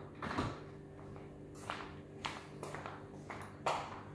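A steady low electrical hum, with a few faint, short clicks and knocks of small objects being handled.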